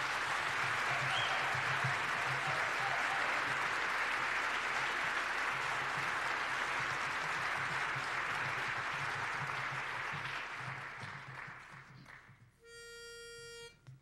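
Audience applauding for about twelve seconds, dying away near the end. Then a pitch pipe sounds one steady note for about a second, giving the barbershop quartet its starting pitch for the next song.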